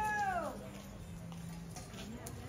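A single drawn-out animal cry, held on one pitch and then dropping away about half a second in.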